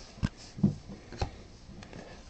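A few faint clicks and taps from hands handling trading cards and foil packs, spread about a second apart.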